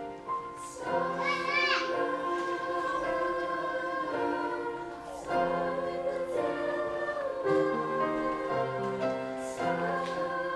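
A sixth-grade school choir of young voices singing in sustained phrases, with upright piano accompaniment.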